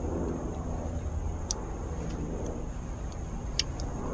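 Steady low rumble of distant traffic, with a few light, sharp clicks from a Pohl Force Mike One folding knife being handled and its blade closed. The clearest clicks come about a second and a half in and again near the end.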